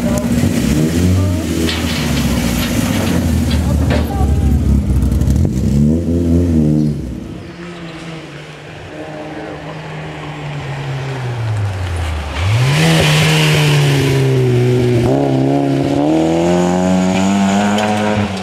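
Škoda Felicia rally car's engine revving at the start, then the car under way on a gravel-and-tarmac forest stage. The engine note drops low, then rises sharply and stays loud, climbing in several sweeps as the car accelerates through the gears.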